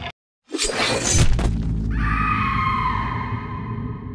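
The live concert sound cuts off abruptly, and after a brief silence a logo sound-effect stinger plays: a loud noisy crash lasting about a second, then a ringing tone over a low drone that slowly fades.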